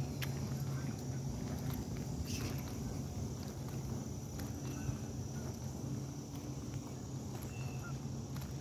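Footsteps on an asphalt road while walking, over a steady high insect buzz and a low steady hum.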